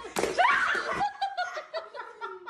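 A person laughing in quick, high-pitched pulses that slide lower toward the end, after a sharp thump just at the start.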